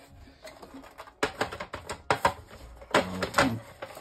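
Hard plastic parts of an RC tank turret clicking and knocking together as the cut turret floor is pushed down into place. The clicks come in three quick runs about a second apart.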